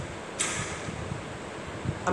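A pause in a man's talk: steady hiss of room noise, with one brief soft rush of noise about half a second in.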